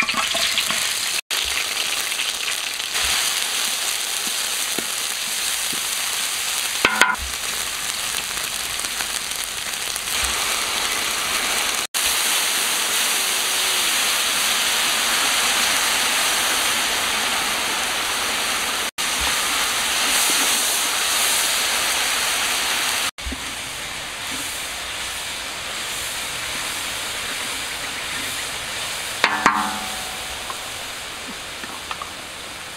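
Chillies, green leaves and ground spices sizzling as they fry in hot oil in a large metal wok, a steady hiss. It drops out abruptly for an instant a few times.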